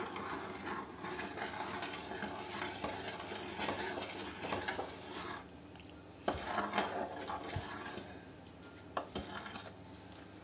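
A metal ladle stirring thick tamarind chutney in a metal pan, scraping and knocking against the pan over and over, with quieter pauses about halfway and near the end.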